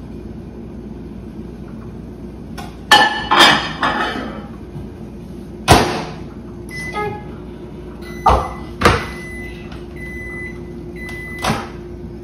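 Over-the-range microwave oven in use: its door clacks open and a dish is set inside, the door shuts with a loud clack, then keypad beeps and steady high tones with short breaks follow among more clacks, and the door clacks open again near the end.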